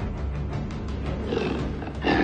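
A bear sound effect growling over tense background music that has a steady low rumble.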